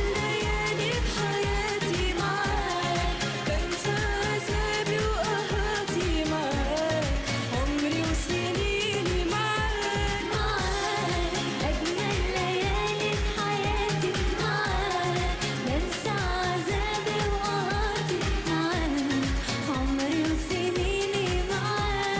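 Arabic pop song with female vocals over a band, driven by a steady kick-drum beat.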